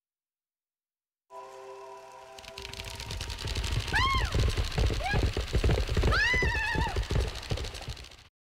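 A horse galloping and neighing in a production-logo sting: after a brief steady tone, a rapid clatter of hoofbeats builds up and a horse whinnies three times, the last call the longest.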